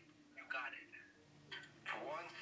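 Faint speech in short snatches, heard through a phone's speaker on a video call.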